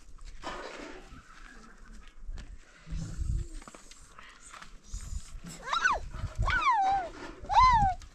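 A young goat kid bleats three times in the second half while it is grabbed and lifted by its legs. Each bleat is loud, rising and then falling in pitch. Before the bleats there are soft thumps and rustling from the handling.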